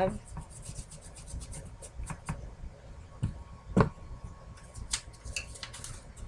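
Hands handling paper and wood-mounted rubber stamps on a craft table: rubbing and sliding, with a few light taps and knocks, the loudest a little before four seconds in.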